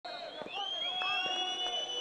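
Referee's whistle: one long steady blast, signalling that the penalty kick may be taken.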